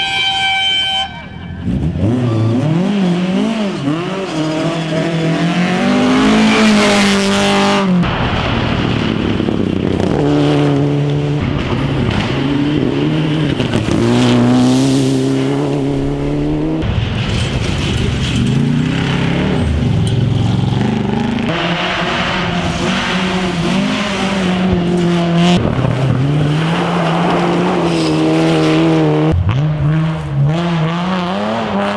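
Rally car engines at full throttle on a gravel stage, their pitch climbing and dropping through gear changes as one car after another passes, in a string of short clips with abrupt changes between them. Gravel spray and the odd tyre squeal run under the engines.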